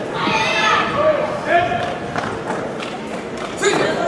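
Indistinct voices calling out across a large, echoing sports hall, with a louder call near the end and a few dull thuds.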